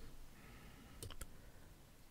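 Near silence with two or three faint, brief clicks about a second in.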